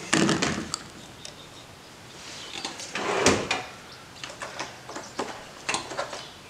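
Hand-handling noises of small carburetor parts and tools on a workbench: rustling and scraping about two seconds in, then a few sharp clicks near the end.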